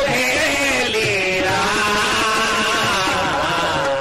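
Sikh kirtan: a singer holds a long, wavering melodic phrase with no clear words, over harmonium. The tabla strokes that surround it drop back during the held line.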